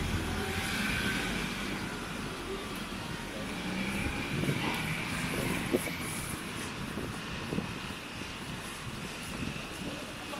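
Street ambience with the low engine rumble of a motor vehicle, a little louder in the first half and easing off in the second, with faint voices in the background.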